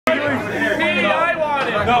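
People talking and chatting, with no music playing.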